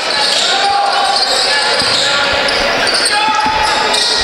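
Gym noise at a high school basketball game: a crowd murmuring in a large echoing hall, with a basketball being dribbled on the hardwood floor and a few short sneaker squeaks.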